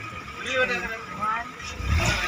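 Faint voices of people talking in the background, with a low rumble building near the end.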